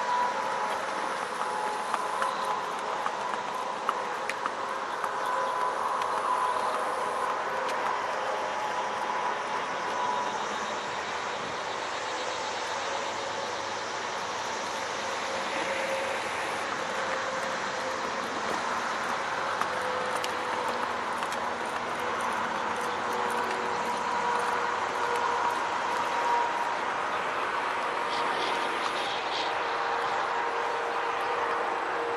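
Steady drone of vehicle engines and traffic, holding faint steady tones throughout, with a few faint clicks.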